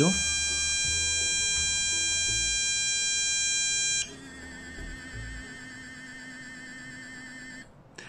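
A steady, loud electronic buzzer-like tone that cuts off about four seconds in. A quieter warbling electronic tone follows and stops shortly before the end.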